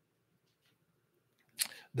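Near silence: room tone, then a man's voice starting to speak near the end.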